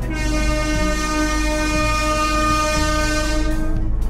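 Train horn sounding one long, steady blast of nearly four seconds that cuts off shortly before the end.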